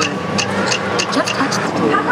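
A run of quick, irregular key clicks, about three or four a second, from a touchscreen kiosk keyboard as an email address is typed in, with voices in the background.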